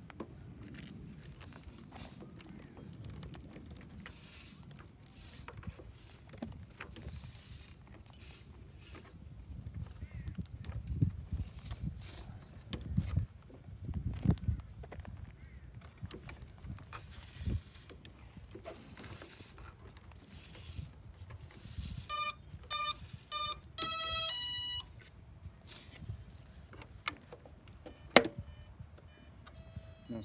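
Handling noise and small knocks as a battery is connected inside an electric RC model plane. About 22 seconds in, the plane's speed controller sounds its arming beeps through the motor: three short beeps, then a longer tone, the sign that the battery is connected and the motor is ready. A single sharp click comes near the end.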